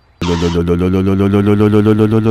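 A vehicle engine sound effect starts suddenly just after the beginning and runs as a loud, steady, low throbbing drone at an even pitch.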